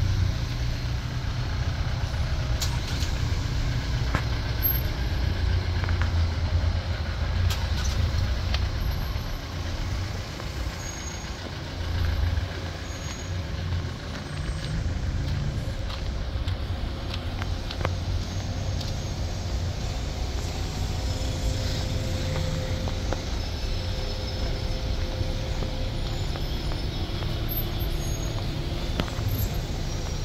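Steady low rumble of congested road traffic: car and van engines idling and creeping along in a queue close by.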